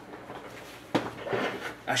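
A single sharp knock about a second in, against quiet room tone, followed by a man starting to speak.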